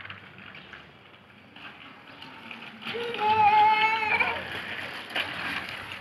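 A child's voice giving one long, high-pitched call lasting just over a second, about three seconds in, over low background noise with a few light clicks.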